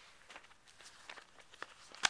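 Near silence with a few faint, scattered clicks and rustles of handling as hands move playmats and the camera.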